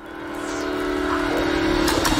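Logo-reveal sound effect: a held, horn-like tone swells up out of silence under a shimmering high sparkle, and near the end starts to slide down in pitch.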